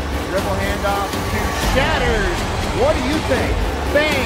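Indistinct voices over faint music, with a steady low hum beneath.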